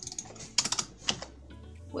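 Typing on a computer keyboard: a handful of quick, sharp keystrokes over soft background music.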